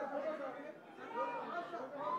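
Indistinct chatter of several people talking at once, faint and away from the microphones.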